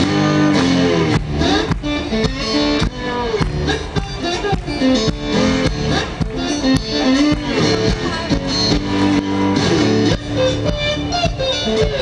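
Live instrumental music: a lap slide guitar played with a slide, its notes gliding up and down in pitch, over steady drums.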